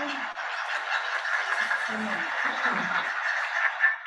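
Steady rushing wind noise over a microphone, heard through a call or sound system, with faint voices under it; it cuts off suddenly at the end.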